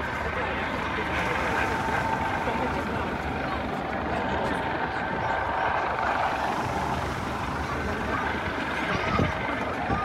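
Coast Guard rescue helicopter hovering with a rescue swimmer on its hoist cable, a steady rotor and engine sound mixed with the chatter of onlookers' voices.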